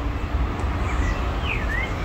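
A bird chirping, a few short whistles that dip and rise in pitch about a second in and again near the end, over a steady low rumble.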